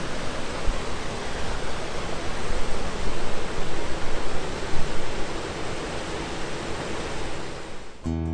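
Water rushing over a small weir: a steady, even rush of noise.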